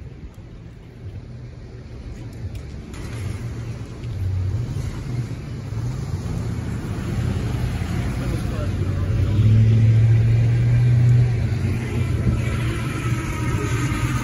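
Pickup truck's engine running as it moves slowly past close by, a low steady hum that grows louder and is loudest about ten seconds in.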